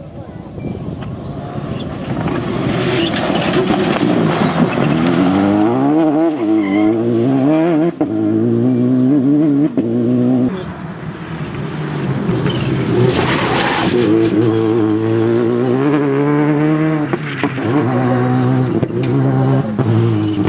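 Rally car engine revving hard through the gears, its pitch climbing and dropping sharply at each gear change as it passes at full speed. There are bursts of tyre and gravel noise along the way.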